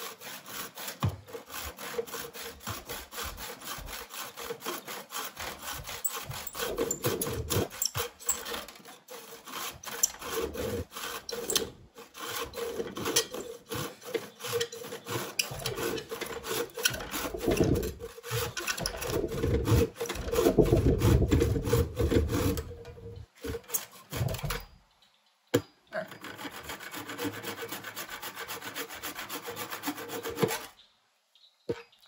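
Hand saw cutting through a wooden axe handle flush with the steel head, sawing off the old handle in quick back-and-forth strokes. The strokes grow heavier and louder about two-thirds of the way through, stop briefly, then resume more lightly.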